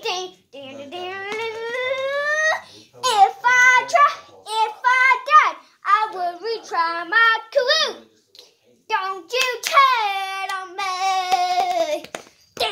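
A young boy singing with no backing music: a long rising note about a second in, then a run of short sung syllables, and a long held note near the end.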